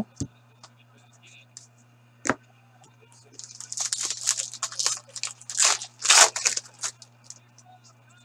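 Foil wrapper of a hockey trading card pack being torn open and crinkled by hand: a few seconds of rustling, tearing bursts, loudest near the end. A single sharp tap comes a little over two seconds in.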